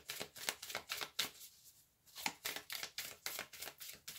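A deck of oracle cards (Kyle Gray's Gateway of Light Activation Oracle) shuffled by hand to draw another card: a rapid run of quick card flicks and taps, with a short pause about a second and a half in.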